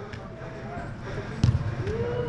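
A soccer ball kicked on artificial turf, one thump about one and a half seconds in, with faint shouts from other players.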